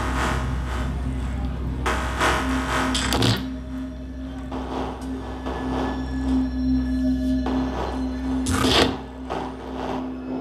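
Live electronic music: a steady deep bass drone, joined about two seconds in by a held mid-low tone, with swelling washes of noise at the start, around two to three seconds in, and again briefly near the end.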